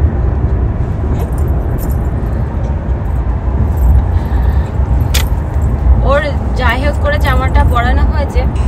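Steady low rumble of a car's road and engine noise heard inside the cabin, with a sharp click about five seconds in.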